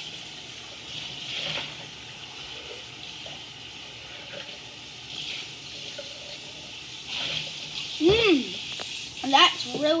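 Kitchen tap running steadily, with a few soft swells in the noise. About eight seconds in comes a short hummed voice sound, then speech begins near the end.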